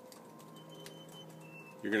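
Kitchen slide-out of a Newmar motorhome retracting: a faint, steady hum from the slide mechanism with a few light ticks, then a man's voice right at the end.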